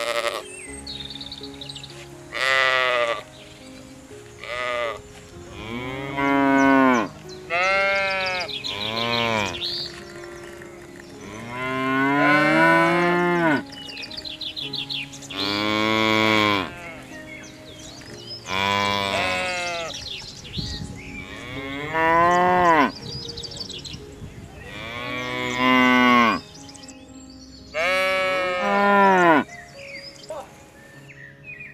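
Cattle mooing over and over, about a dozen calls that each rise and then fall in pitch, some short and some drawn out for a second or more.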